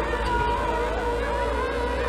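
Wordless singing with held notes and smooth pitch bends, layered and repeating like a vocal loop, over a steady low drone.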